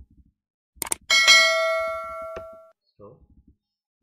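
Subscribe-button animation sound effect: two quick clicks, then a bell ding that rings out and fades over about a second and a half.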